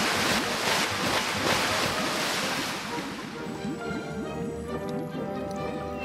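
Rushing water noise, strongest at first and fading over about three seconds, under light background music whose tones come forward in the second half.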